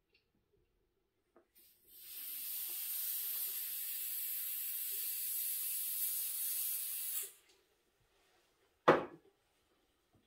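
Butane hissing for about five seconds as the empty butane torch is refilled from a gas canister. Near the end comes a single sharp click, the torch's igniter being tried.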